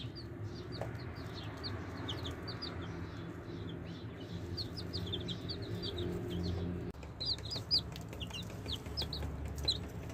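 Baby chicks peeping: many short, high cheeps in quick succession, several birds calling over one another, with a low steady rumble underneath.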